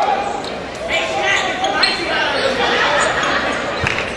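A basketball bouncing on the gym's hardwood court during play, with a firm bounce near the end. Players' and spectators' voices echo around the large hall.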